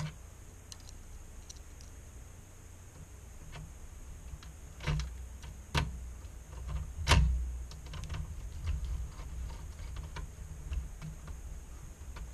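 Irregular light clicks and taps of a screwdriver working a screw into a monitor's sheet-metal back panel, with a few sharper clicks about five to seven seconds in.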